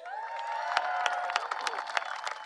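Audience applauding, many hands clapping at once, with a few voices cheering through the first second and a half.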